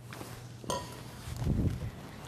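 A table being moved off to the side: a sharp knock about two-thirds of a second in, then a low rumble near the end as it is shifted and set down.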